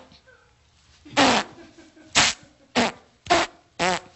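Five short, wet squelching noises at irregular intervals, imitating the sucking of mud that holds a trapped person fast.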